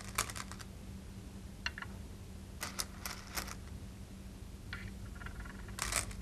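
Go stones clicking sharply onto a wooden Go board as moves are played, in short clusters of clicks: at the start, around two to three and a half seconds in, and near the end. A faint steady low hum runs underneath.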